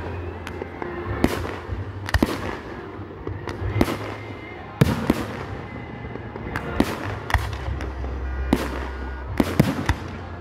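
Fireworks: aerial shells fired from a ground battery and bursting overhead, a string of sharp bangs at uneven spacing, about one or two a second, over a steady low rumble.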